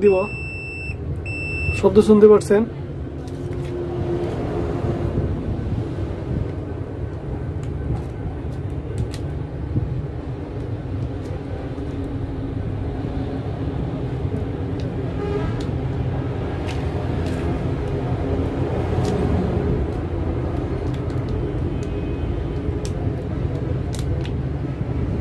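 A digital clamp meter beeps: a high electronic tone lasting under two seconds and broken once. After it comes a steady low background rumble with faint clicks of test probes and leads being handled.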